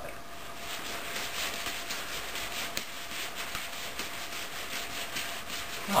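Rustling of a nylon track jacket with soft, quick taps of juggling balls landing in the hands as three balls are juggled: a steady swishing with faint rapid ticks throughout.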